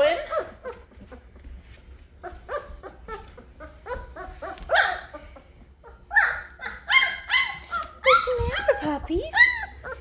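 A litter of 19-day-old Great Bernese puppies (Great Pyrenees × Bernese Mountain Dog) whining and yelping, many short high cries overlapping, busiest and loudest in the last four seconds: hungry puppies crying for their mother to come and nurse them.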